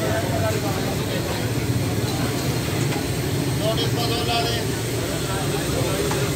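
Street ambience: a steady low rumble with people talking indistinctly in the background.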